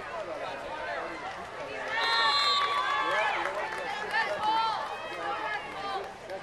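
Spectators' voices calling and shouting over one another, loudest from about two seconds in.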